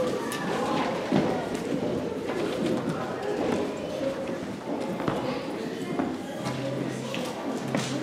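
Overlapping children's voices chattering in a large, echoing hall, with a few knocks and shuffling as people move about. A steady low hum comes in about six and a half seconds in.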